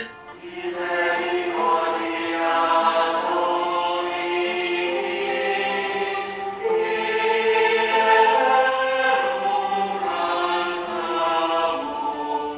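A choir singing slow, held chords of sacred choral music.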